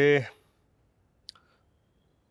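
A man's spoken word trailing off, then a near-silent pause broken once by a brief, faint click a little past halfway.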